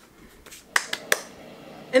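A few sharp, short clicks in quick succession around the middle, against a quiet room.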